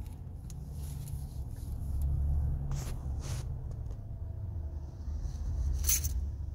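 A steady low rumble, a little louder about two seconds in, with a few faint brief hissing sounds around three seconds in and near the end.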